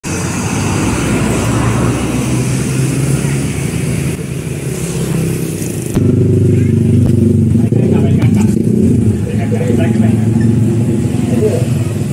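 Road traffic passing on a street, a steady noise with a low hum. About halfway through it cuts abruptly to a steady low hum with voices in the background.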